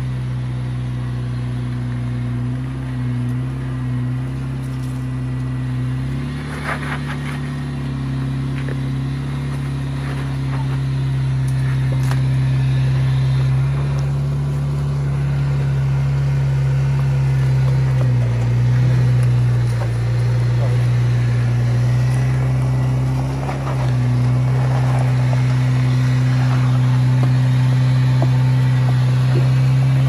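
Jeep Wrangler engine running at low, steady revs as it crawls up a rock ledge, the note shifting slightly a few times with small throttle changes.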